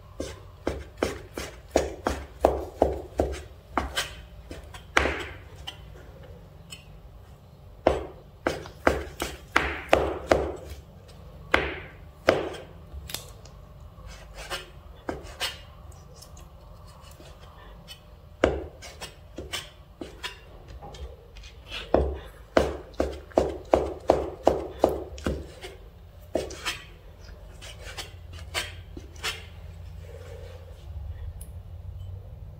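Cleaver mincing soaked shiitake mushrooms on a cutting board: runs of quick knocks of the blade on the board, about four a second, broken by short pauses.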